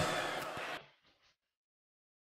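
Faint live-stage ambience trailing off the end of a spoken line, cut off suddenly just under a second in, then dead silence.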